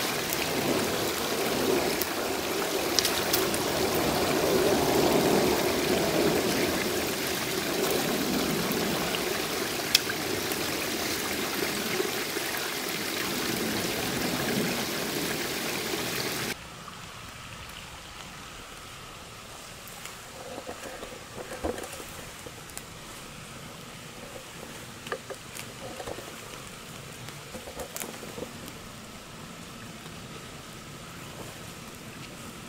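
A small rocky forest creek running, a steady rush and trickle of water. About sixteen seconds in it cuts off suddenly to a much quieter background with scattered small crackles and snaps.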